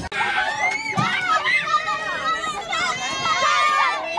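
A crowd of children shouting and calling out together, many high voices overlapping, with one long high shout near the end.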